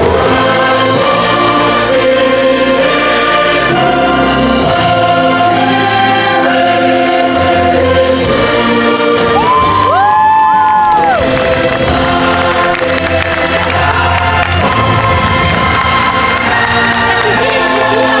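Live stage-show music with a choir singing over a band. About ten seconds in, a solo voice rises into a long held note and then falls away.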